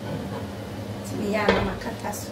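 Glass pot lid set down on a metal cooking pot: a short scrape and ringing clatter, with a sharp clink about one and a half seconds in, over a steady low hum.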